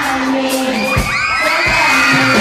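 Concert crowd of high, young voices shouting and cheering, swelling from about a second in, over live music with a steady kick-drum beat.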